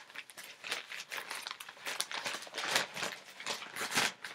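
Short, irregular crinkling rustles of a small pouch and the folded packable bag inside it being handled.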